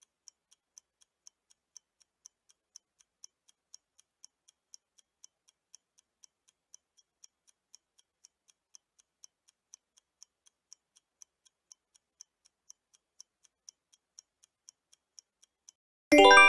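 Faint clock-ticking sound effect of a countdown timer, a quick even tick-tock of about four ticks a second alternating louder and softer, stopping just before the end as the countdown runs out.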